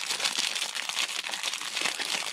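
Clear plastic wrapping crinkling as it is handled around a collapsible silicone cup: a steady run of small, quick crackles.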